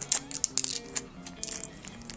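Clear protective plastic film being peeled off a small acrylic mini stand: a run of sharp plastic crackles and clicks, loudest near the start, over soft background music.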